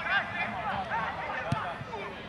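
Several voices of players and onlookers calling and shouting across an open soccer pitch, overlapping and unclear, with one short sharp knock about one and a half seconds in.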